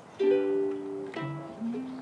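Ukulele strummed: a chord about a fifth of a second in that rings for most of a second, then a second chord about a second in.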